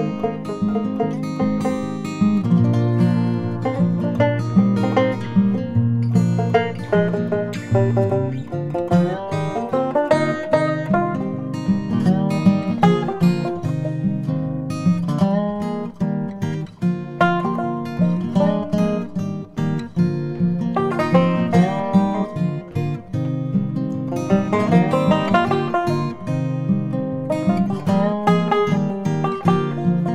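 Background music on acoustic guitar, a steady run of picked notes.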